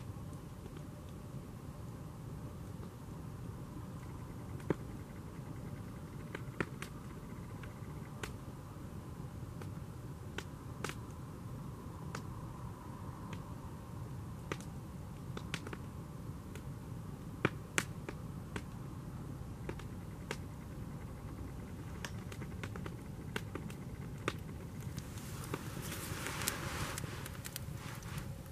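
Wood campfire crackling: scattered sharp pops and snaps over a low steady rumble, with a short rush of hiss near the end.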